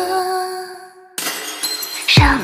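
A held musical note fades away over the first second. A sudden crash with a noisy, glassy, shattering quality then starts just past the middle and carries on to the end.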